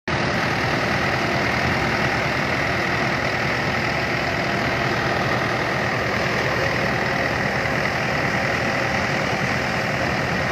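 Fiat 640 tractor's diesel engine running steadily under load as it drives a thresher, mixed with the thresher's own mechanical din of drum and fan.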